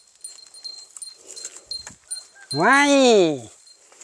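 A cow moos once, a single call of about a second that rises and falls in pitch, a little past the middle. Before it there is faint rustling of steps through dry stubble.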